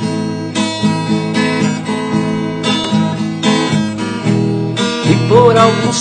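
Acoustic guitar strummed in a steady rhythm, with a voice starting to sing near the end.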